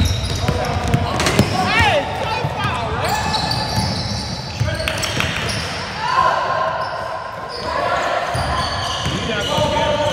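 Basketball game on a hardwood gym floor: the ball bouncing and sneakers squeaking, with spectators' voices and calls around the court.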